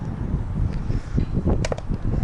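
Wind buffeting the microphone, with a brief swish and a few sharp clicks near the end as a fishing rod casts a lure.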